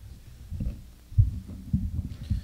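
Irregular low thumps and rumbling of a microphone being handled or moved, louder from about a second in.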